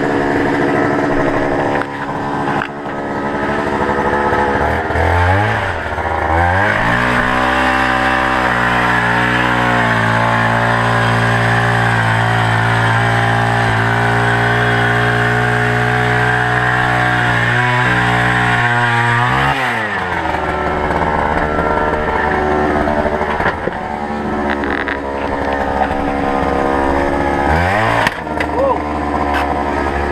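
Petrol-powered ice auger engine idling, then revving up about six seconds in and held at high revs for some thirteen seconds while the auger bores through the ice, dropping back to idle at about twenty seconds and revving briefly again near the end.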